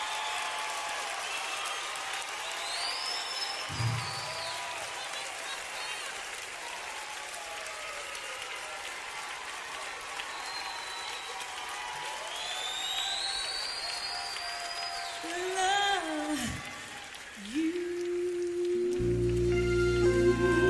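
Concert audience applauding and cheering after a song, with whistles rising and falling above the clapping. Near the end a held musical note comes in, and music builds under it.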